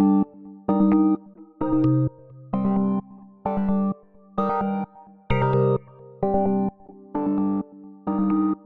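A synth lead melody of short chord stabs, about nine of them at a little under one a second with short gaps between, played through the Waves Brauer Motion stereo panning and effects plugin.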